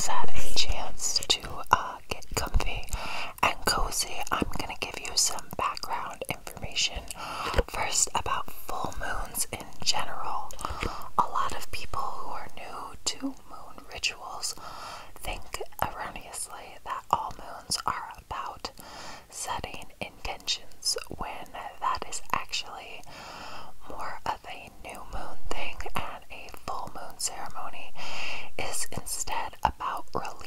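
A woman's inaudible ASMR whisper, breathy and unintelligible, spoken right up against a microphone, with many small sharp clicks scattered through it.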